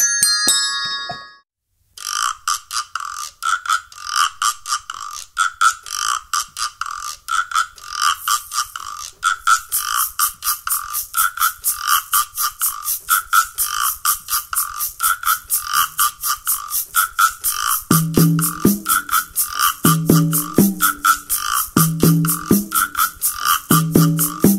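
A few quick dings of tuned desk bells, then a short silence. At about two seconds a piece played only on small percussion begins: fast, even ticking with a mid-pitched pulse about twice a second. Lower pitched notes join near the end.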